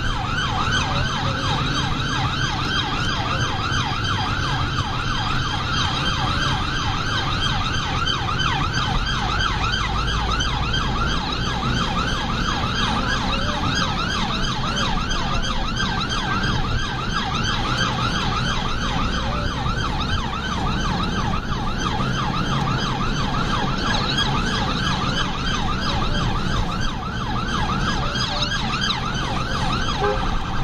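Emergency vehicle siren on an NHS Blood Service response car, sounding a fast yelp: rapidly repeating rising whoops, several a second, heard from inside the car's cabin over engine and road rumble.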